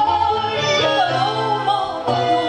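Live band music: a woman sings long, wavering held notes over the band's accompaniment.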